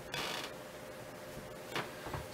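Brief handling noise from a metal telescope mount being let go of: a short scrape shortly after the start and a light click near the end, over a faint steady room hum.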